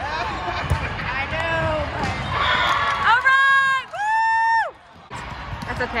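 Girls' voices calling and shouting in a large echoing gym, with a volleyball struck once near the start. About three seconds in come two long shouted calls of about a second each, the second higher, and then the sound drops out briefly.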